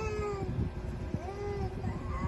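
Infant cooing: two short, high-pitched vocal sounds, the first right at the start and a second about a second later.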